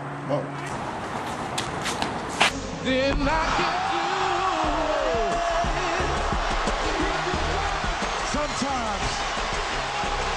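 Basketball arena broadcast sound. A few sharp knocks come in the first seconds, then from about three seconds in a steady crowd roar with shouting voices.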